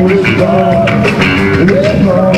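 Live R&B band playing loudly: electric bass guitar and drums under a melody line that bends in pitch.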